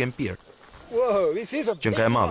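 Steady high-pitched insect chirring, like crickets, with a brief wavering vocal sound about a second in.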